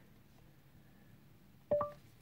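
Google Assistant listening tone through the car's speakers: a short two-note rising beep near the end, after the steering-wheel voice button is pressed. Before it the cabin is nearly silent.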